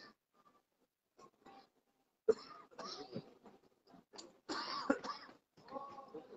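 A person coughing and clearing their throat in two short bouts, the first a little over two seconds in and the louder one near five seconds.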